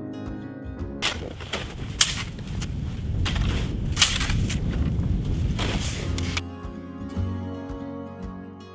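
Acoustic guitar background music, which about a second in gives way for some five seconds to snow shovels scraping and digging into packed snow, with several sharp strikes of the blades. The music comes back near the end.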